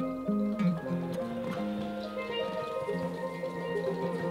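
Live band music with no voice: a moving melodic line of pitched notes in the low-middle range over held notes.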